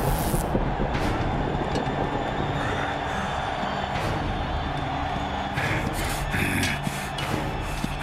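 Animated action-film soundtrack: a dense, rumbling mix of background music and fight sound effects, with sharp hits about a second in and around four seconds, and a quick run of them in the last couple of seconds.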